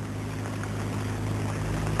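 A steady low hum over hiss, growing slowly louder.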